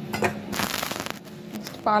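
A short dry rustle with fine crackling, about half a second in and lasting under a second, with a few light clicks around it, over a faint steady hum.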